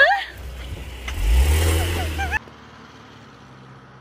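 Car engine revving up, loud for about a second before cutting off abruptly. A short rising vocal squeal comes just before it, at the start.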